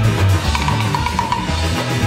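A ska band playing live: drum kit keeping a steady beat under a strong electric bass line, with a brass and sax horn section. A run of short, higher notes sits in the middle.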